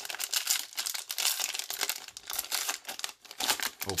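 Wrapper of a Donruss baseball trading-card fat pack being torn open and crinkled by hand, a dense, irregular crackle.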